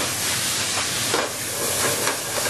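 White wine sizzling in a hot pan with a browned grouse, a steady, loud hiss as the wine boils off.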